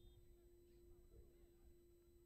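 Near silence: faint open-air ambience with distant, indistinct voices and a steady low electrical hum.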